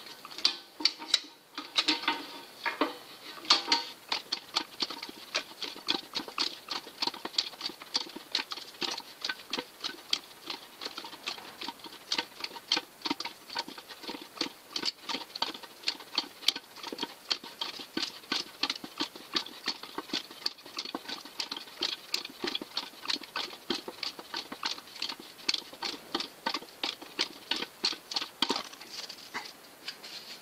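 Hand-lever sheet-metal stretcher working along the flange of a zinc strip: a steady run of sharp metallic clicks, two to three a second, as the jaws grip and stretch the metal with each stroke of the lever.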